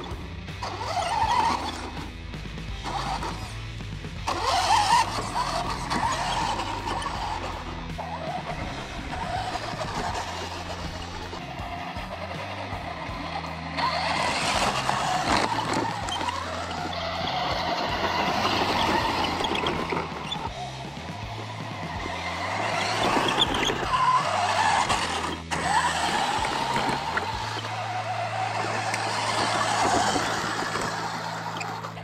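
Electric RC truck with a Traxxas Velineon 3500 brushless motor driving over gravel and grass, towing a small trailer; its motor and tyres rise and fall in loudness as it moves, under background music.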